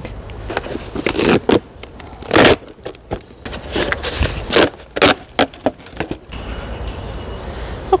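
A white plastic winter-sowing container being pulled open and handled: a run of irregular plastic crinkles and scrapes that stops about six seconds in.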